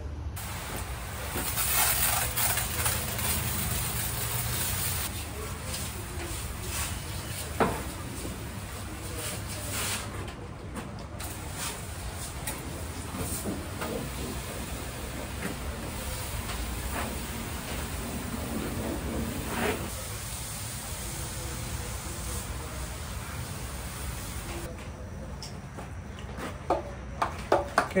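Pressure washer jetting water onto a car's painted body: a steady hiss of spray over the low hum of the pump motor. The spray stops briefly about ten seconds in and again near the end.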